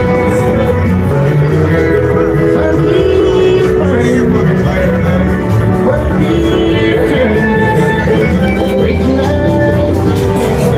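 Loud bluegrass-style music with guitar, playing steadily.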